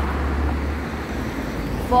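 Road traffic passing on the street: a low engine rumble for about the first second, then a steady hiss of traffic.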